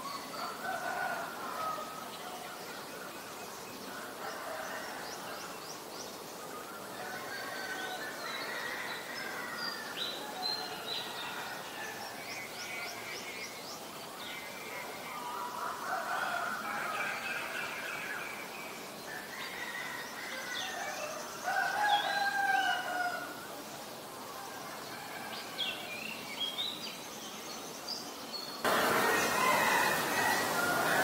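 Male Oriental magpie robin singing a long, varied song of short whistled and warbled phrases, rising and falling notes with chirps between. Near the end the song gives way to a louder steady hiss.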